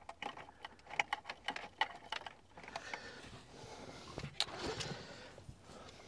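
Faint small clicks and rustling of cables and plastic as the GPS antenna connector is fitted into the back of an aftermarket Android car stereo, with a sharper click about four and a half seconds in.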